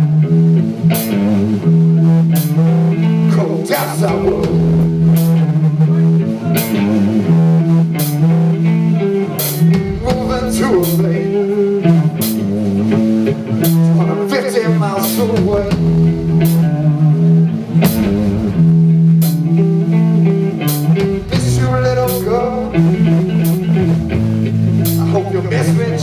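A live heavy blues-rock power trio playing: electric guitar over bass guitar and a drum kit, with cymbal hits recurring at short even intervals.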